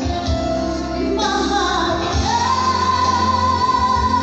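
A woman singing live into a microphone over backing music; her voice moves down through a phrase, then holds one long note from about two seconds in.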